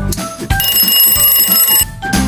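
Alarm-clock ringing sound effect, a fast, bright bell rattle lasting just over a second, the timer signal that time is up for the question. Background music plays at the start, before the ring cuts in.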